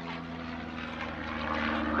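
Propeller and piston engine of a de Havilland Canada DHC-1 Chipmunk trainer in flight overhead, a steady drone growing louder toward the end.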